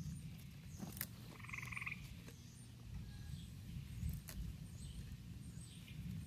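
A frog gives one short, rapidly pulsed trill about a second and a half in, faint and at a distance. Around it come a few faint snaps as plantain leaves and stalks are pinched off by hand, over a low steady rumble.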